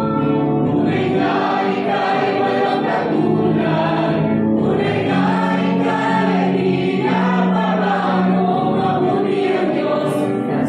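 A congregation singing a gospel worship song together, with worship leaders singing into microphones.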